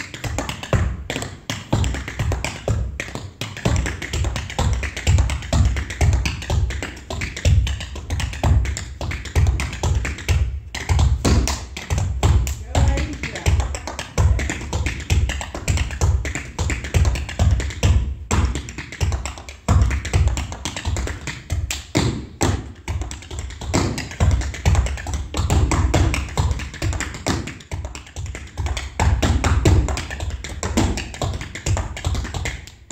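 Tap shoes striking a wooden stage floor in a fast, dense, syncopated solo rhythm of heel and toe strikes, with heavy low thuds among the lighter taps.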